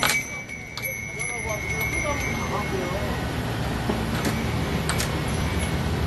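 Indistinct background voices over a steady low hum, with a few sharp clicks and a thin steady high tone that fades out about halfway through.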